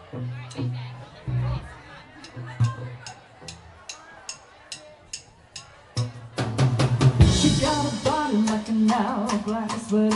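Rock drum kit played alone: low kick-drum thuds under sharp stick clicks about two to three a second. About six seconds in, the full band comes in loud with a cymbal crash, then sustained keyboard and bass notes.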